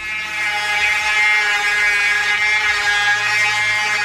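Electric dirt bike's rear hub motor whining at a high, steady pitch as it spins the rear tyre in a burnout, with the front brake held. It swells over the first second, then holds.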